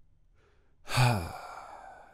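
A man's voiced sigh about a second in: a breathy exhale whose pitch falls, trailing off slowly, after a faint intake of breath.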